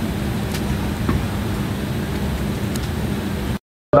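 Steady airliner cabin noise inside an Embraer 190 on the ground: an even hiss of air with a low steady hum. It cuts out abruptly to silence for a moment just before the end.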